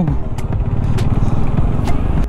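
Bajaj Dominar 400's single-cylinder engine running steadily as the motorcycle rolls along at low speed, with a few faint light clicks.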